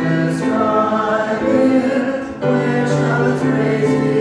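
A small group of voices singing a hymn together with upright piano accompaniment, holding long notes, with a short break between phrases about two and a half seconds in.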